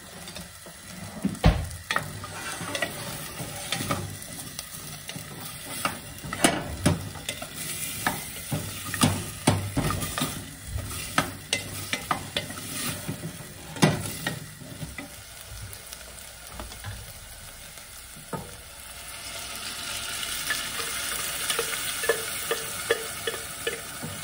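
Diced raw potatoes and carrots frying in a stainless steel saucepan, stirred with a wooden spoon that knocks repeatedly against the pan for the first half. Later the knocking stops and the sizzle grows stronger over the last few seconds.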